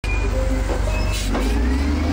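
Diesel engine of a front loader running steadily close by, a deep even rumble.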